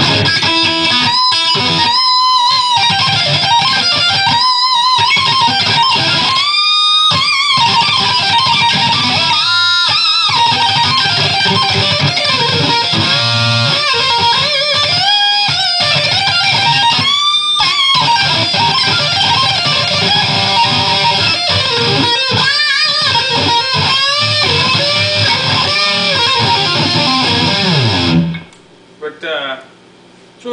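2003 PRS Custom 22 Artist electric guitar with Dragon II pickups played loud through an amp: a lead line full of string bends that glide up in pitch and back down, the bent notes ringing on rather than dying out. The playing stops abruptly about two seconds before the end.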